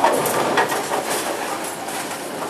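Bowling alley noise: bowling balls rumbling down the lanes, with a few sharp clatters of pins being struck.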